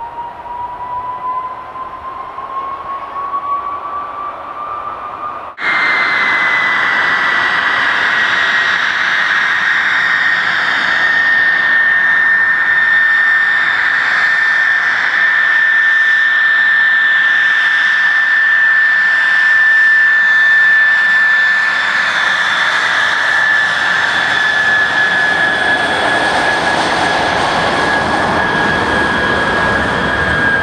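De Havilland Venom's Ghost turbojet whining, the pitch climbing steadily as the engine spools up. About five and a half seconds in the sound jumps suddenly to a louder, steady high whine over a rush of jet noise, and the pitch sags slightly toward the end.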